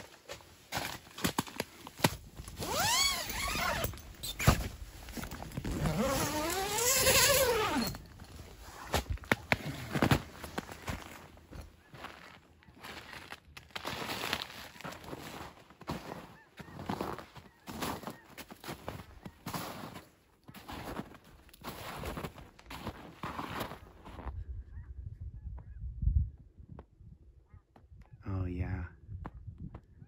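Nylon door zipper of a Gazelle T4 pop-up tent being unzipped in two long pulls, its pitch rising and falling with each pull. This is followed by irregular footsteps crunching in snow, which fade to quiet with a single thump near the end.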